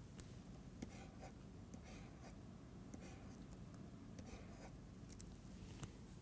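Faint taps and short scratching strokes of a stylus drawing on a pen tablet, over a steady low hum.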